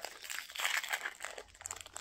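Crinkling of small toy packaging being handled and opened by hand, with a patch of denser rustling about half a second in and scattered small clicks.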